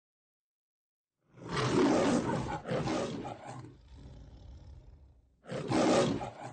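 A lion roaring twice, as in a film's opening studio-logo roar: a long roar starting about a second in that dies away, then a second roar near the end.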